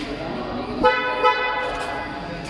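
A car horn sounds just under a second in, one steady honk held for about a second.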